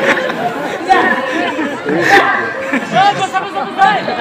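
Speech: several voices talking at once, with a hall-like echo.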